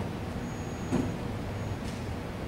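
Steady low room rumble, with one brief knock about a second in.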